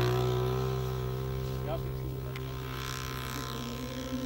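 Radio-controlled model aeroplane's small combustion engine running at full throttle on takeoff, a steady high-pitched drone that slowly fades as the plane climbs away.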